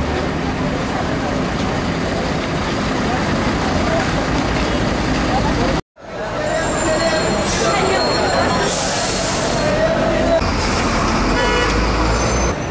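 Busy city street ambience: road traffic and the voices of people around, with no single sound standing out. It cuts off for an instant about six seconds in and comes straight back.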